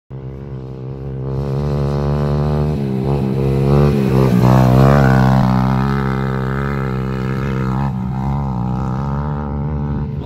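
A racing quad bike (ATV) engine is driven hard past close by on a dirt course. Its note rises and falls with the throttle, gets loudest about halfway through as it passes, then eases off as it moves away.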